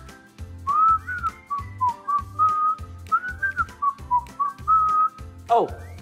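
A person whistling a tune with the lips: one clear pitched line that moves up and down, whistled well. Background music with a steady beat plays under it, and a voice comes in near the end.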